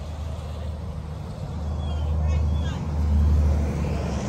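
Low rumble of traffic on a nearby highway, growing louder in the second half, with faint voices.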